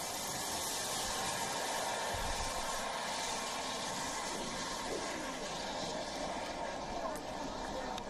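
Steady hiss of the jet turbines of Zapata's five-turbine flyboard in flight.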